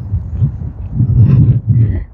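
Wind buffeting the microphone of a handheld camera outdoors: an uneven low rumble that swells louder about a second in.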